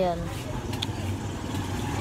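A motor vehicle engine running nearby, a steady low rumble, with a short spoken word at the very start and a couple of faint clicks.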